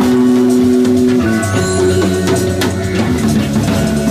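A drum kit played along with recorded rock-jazz music: a run of drum hits over the backing track's held notes.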